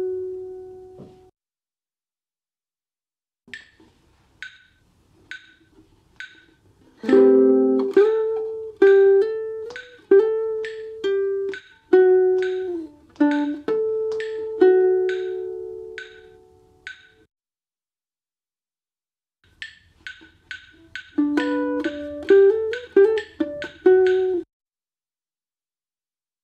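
Nylon-string acoustic-electric guitar playing a short single-note phrase twice, with ringing harmonics and a slide down, over a metronome ticking about one and a half times a second; the ticks start a few seconds before the first phrase and there is a short pause between the two runs.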